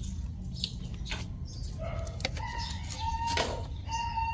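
A rooster crowing in the background, a long held call starting about halfway through, over a steady low rumble and a few light clicks.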